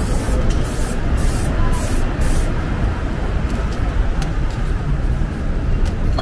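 Aerosol spray-paint can sprayed in a quick run of short hisses during the first two and a half seconds, over a steady low rumble of city traffic.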